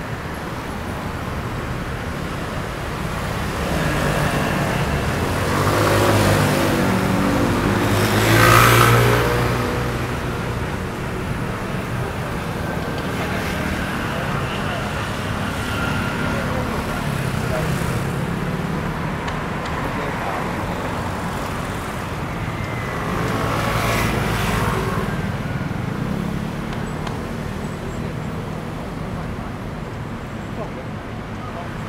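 City street traffic: cars and motor scooters passing close by one after another over a steady hum. The loudest pass comes about eight or nine seconds in and another swells around twenty-four seconds.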